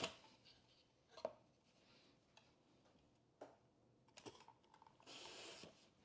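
Eggplant being sliced on a mandoline: a few sharp clicks of the slicer and its hand guard, then a short, soft scraping swish near the end as the eggplant is pushed across the blade.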